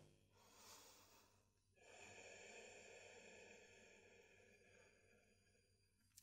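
Near silence, with one faint, slow breath out that starts about two seconds in and fades away.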